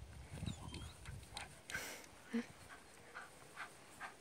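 Faint, scattered sounds of dogs moving about on grass: soft thumps early on, a few light ticks and one short hiss a little before the middle.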